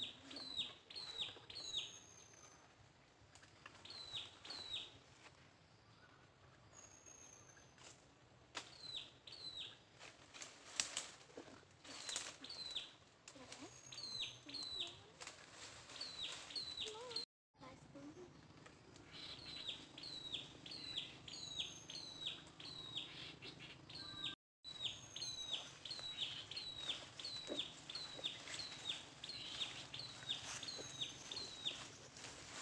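Birds calling in the undergrowth: runs of short, high chirps that slide downward, repeated again and again, with an occasional higher whistle. There are a few light rustles or clicks, and the sound cuts out briefly twice.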